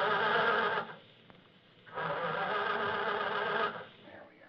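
Buzzing whir from a hand-cranked prop machine's 'motor' being wound, in two bursts: one ending just under a second in, and a longer one from about two seconds in until shortly before the end.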